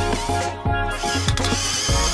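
Background music with a steady beat. About a second in, a high whirring joins it, the motor of a cordless drill driving a screw.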